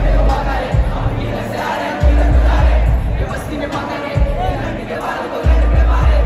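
A packed concert crowd shouting along close to the microphone over loud rap music from a PA system. Deep, sustained bass notes hit at the start, about two seconds in, and again near the end.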